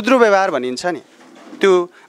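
Only speech: a man talking in Nepali in two short phrases with a brief pause between.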